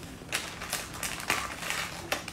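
Close handling noise: a run of short, irregular scratchy clicks and rustles as cloth and a hand move against the phone.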